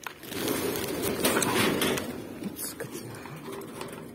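A flock of birds flapping their wings as they take off, a fluttering clatter that is loudest in the first two seconds and then dies down.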